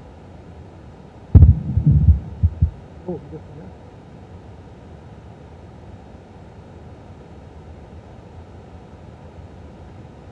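A few low thumps and rumbles on a table microphone for about a second and a half, starting with a sharp knock about a second in. A faint voice follows briefly, then steady low room hum.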